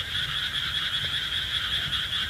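A steady, high-pitched chorus of frogs calling at night by the water.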